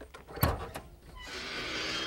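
Hood of a 1974 Oldsmobile Hurst/Olds being opened: a sharp latch pop about half a second in, then a rising rushing noise over the last second as the hood is lifted.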